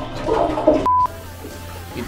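A brief burst of speech, then a short electronic beep at one steady pitch about a second in, lasting a fraction of a second and cutting off suddenly, with soft background music underneath.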